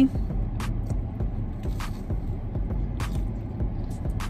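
A person chewing a mouthful of crispy chicken nugget and french fry, with scattered short crunching clicks, over a steady low rumble.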